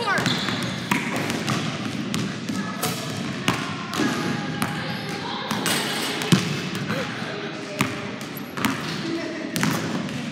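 A basketball bouncing on a hardwood gym floor several times at irregular intervals, each bounce a sharp thud that echoes around the large gym.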